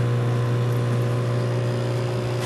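Steady machine hum with a strong low drone and several constant higher tones, unchanging throughout.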